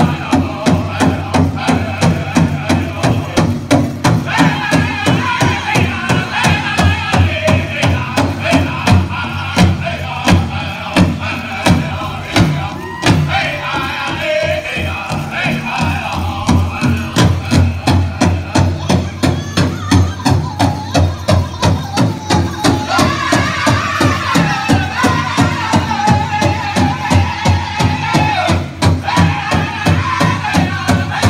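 Powwow drum group: a big drum struck in a steady beat of about two strokes a second, with high-pitched group singing over it, the melody stepping downward near the end.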